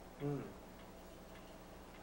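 A man's short 'mm', then a pause holding only faint room tone with a low, steady hum.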